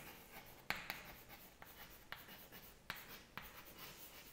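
Chalk writing on a chalkboard: faint scratching, broken by several sharp taps as the letters are formed.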